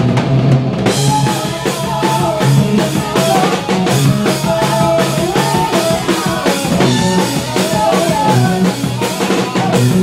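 Rock drum kit played live with the band: a steady, driving beat of kick, snare and cymbal hits over the pitched sound of the other instruments. The cymbals drop out for a moment at the very start.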